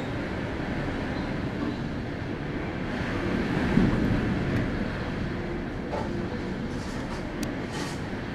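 Strong typhoon winds gusting through trees: a steady rush that swells to its strongest gust about four seconds in, with a few small clicks near the end.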